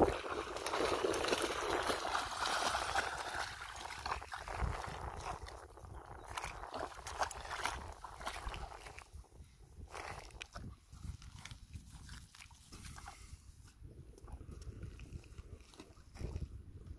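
A German shepherd splashing with its muzzle in shallow water at the bank. The water noise is loudest in the first few seconds, then gives way to fainter, scattered small splashes.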